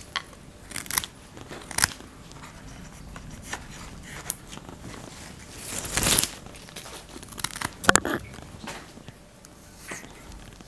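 A fresh-cut rose's stem and leaves handled close up: a few sharp snaps and crunches, with a longer rustle about six seconds in.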